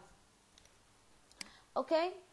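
Very quiet room tone, broken by a single sharp computer mouse click about one and a half seconds in.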